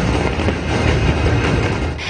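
Fireworks going off in quick succession: a dense, continuous crackling over a deep low rumble.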